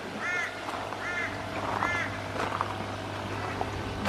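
A bird calling three times, short arched calls about a second apart, over a steady low hum.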